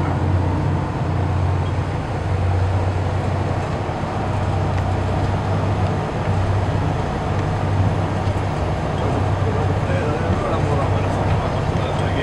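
Twin Scania diesel engines of a patrol boat running steadily at speed: a deep, even drone that swells slightly and falls back, with hull and water rush, heard from inside the wheelhouse.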